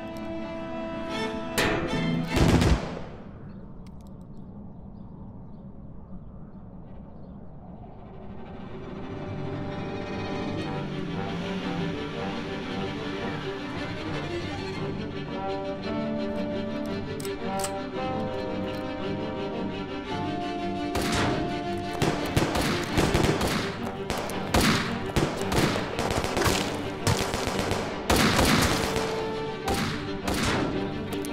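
Film score music with a loud bang about two seconds in. From about twenty-one seconds on, rapid bursts of automatic gunfire play over the music.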